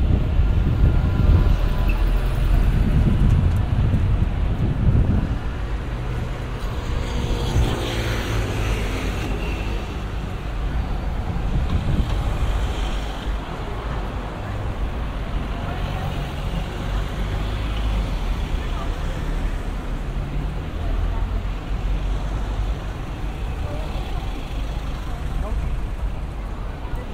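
Road traffic on a busy city street: cars driving past close by, with a low engine and tyre rumble loudest in the first five seconds. An engine note rises in pitch about seven seconds in.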